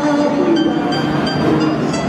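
Amplified singing over a backing track, ending on a held note, then giving way to a steady, noisy din.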